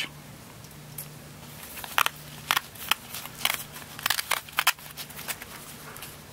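Irregular clicks and crackles of a folding fabric solar panel being handled as its end-pocket flap is opened.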